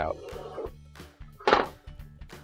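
Quiet background music with one short plastic clack about one and a half seconds in, as a white plastic freezer drawer slide is set down on a laminate floor.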